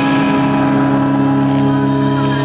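Rock band holding one sustained chord through a stadium PA, a steady low note ringing without change.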